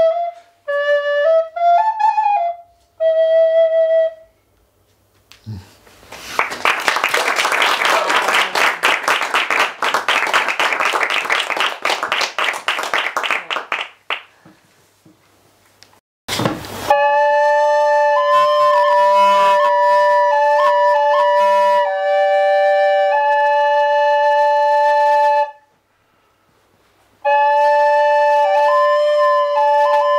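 End-blown bamboo flute playing a short melody of sliding notes, followed by about eight seconds of dense rushing, rattling noise. After a pause and a single knock, a wooden flute plays long held notes, breaks off, and starts again near the end.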